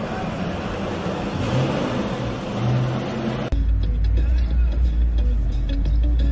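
Street and traffic noise, then an abrupt cut about three and a half seconds in to a steady low engine and road rumble inside a car cabin.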